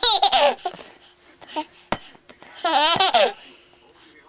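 Baby laughing in two bursts, one right at the start and another about two and a half seconds in, with a brief click between them.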